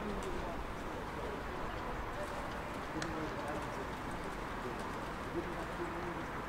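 Open-air rugby pitch ambience: faint, indistinct shouts and calls from players over a steady background hiss and hum.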